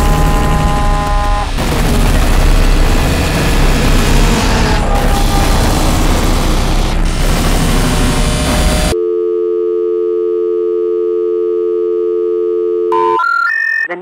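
Loud, dense harsh-noise music cuts off abruptly about nine seconds in to a steady telephone line tone. Near the end, three short rising special-information tones sound, the signal that comes before a recorded 'number has been changed' intercept message.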